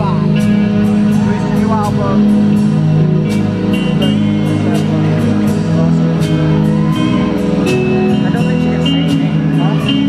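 Rock band playing a slow, smoky jazz-style ballad live: guitar over sustained bass and keyboard notes, with regular cymbal ticks keeping time and no singing.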